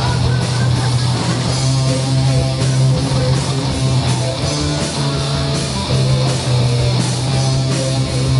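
Live rock band playing: an electric guitar riff over a steady bass line and drums.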